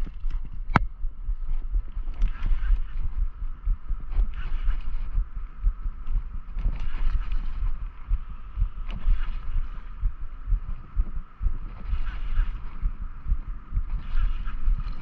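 Baitcasting reel being cranked to bring in a hooked pike: a steady whir from the reel over rumble from handling and wind on the microphone, with small clicks scattered through.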